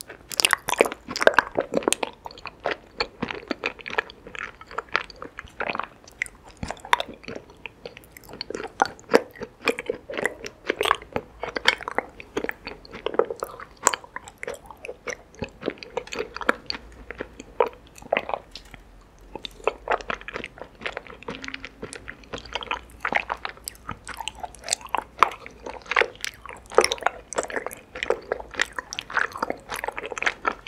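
Close-miked chewing of raw honeycomb and tapioca pearls: a dense, continuous run of short, sticky clicks and snaps from the wax comb and the chewy pearls, easing off briefly about two-thirds of the way through.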